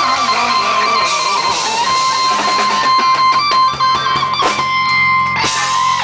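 Live cover band playing an instrumental passage without singing, led by guitar, with a long held high note from about two seconds in.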